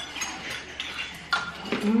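Metal spoons clinking and scraping against ceramic bowls as people eat, a handful of light separate clinks.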